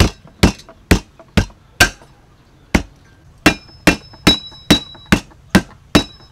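Heavy metal cleaver striking lemongrass stalks on a thick wooden chopping block: about a dozen sharp knocks, roughly two a second, with a short pause a little before halfway. Several of the later strikes leave the blade ringing briefly.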